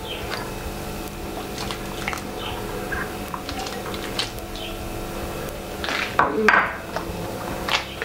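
Wort boiling steadily in a Grainfather electric brewing kettle, with scattered light clinks and taps as a small cup of water additions and yeast nutrient is tipped in and the kettle is worked over. A louder brief rustle comes about six seconds in.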